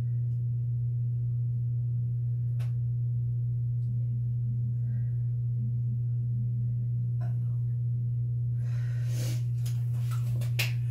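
A steady low electrical hum, with a couple of faint clicks.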